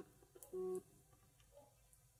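A short electronic beep, a single steady tone, about half a second in, just after the tail end of a matching beep. A few faint ticks follow.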